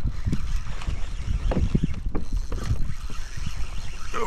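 Wind rumbling on the microphone, with a few dull knocks scattered through it, most of them about one and a half to two seconds in.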